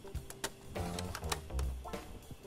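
A Samsung laptop's CD-ROM drive takes a disc, with a few sharp clicks and a mechanical whir as the tray is pushed shut and the disc spins up. Background music plays underneath.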